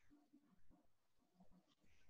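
Near silence: faint room tone with a few very faint, soft sounds.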